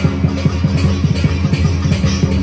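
Dragon dance music: fast, steady drumming at about five strokes a second with cymbal-like clashes over a steady low drone.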